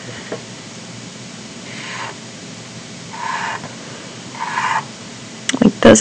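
Black Sharpie permanent marker drawn across paper in three short strokes, about a second apart, as whiskers are drawn.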